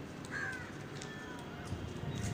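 A single short bird call, a caw, about half a second in, over steady low background noise.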